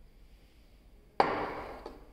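Glassware set down on a wooden lab bench: one sharp knock a little past a second in that fades quickly, then a smaller click.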